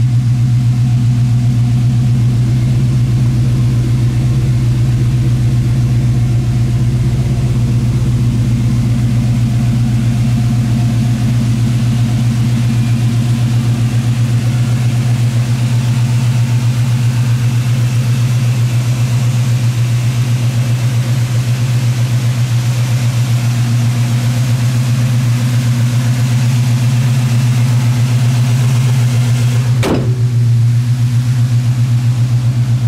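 1968 Chevrolet Chevelle's V8 idling steadily with a low, even exhaust rumble, held at idle without revving.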